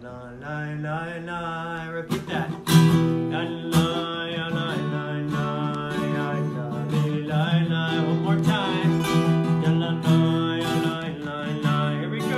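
A man singing a prayer melody while strumming an acoustic guitar, with steady chords under the voice.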